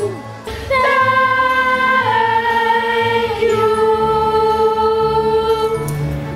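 A student choir sings a few long, held notes over instrumental backing. The singing enters about a second in and steps down in pitch twice.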